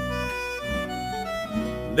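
Instrumental accompaniment to a folk zamba between sung lines: held accordion notes stepping through a short melodic phrase over a steady low bass.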